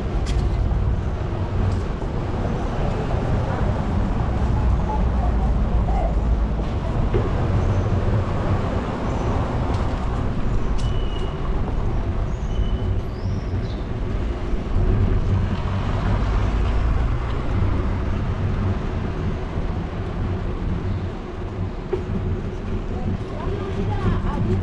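Busy city street ambience: a steady wash of road traffic with a deep low rumble.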